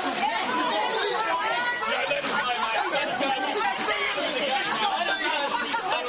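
A group of people talking and calling out over one another at once: a steady, overlapping babble of voices with no single speaker clear.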